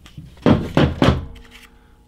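Three dull knocks in quick succession about half a second in, from handling compact polymer-frame SIG P365 pistols as they are swapped between hands and against the wooden tabletop.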